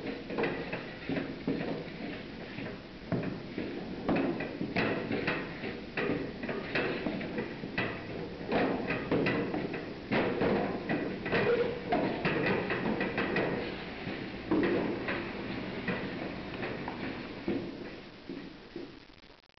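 A utensil scraping and knocking against a pot as thick choux paste (scalded flour dough) is stirred: irregular clacks and scrapes with no steady rhythm.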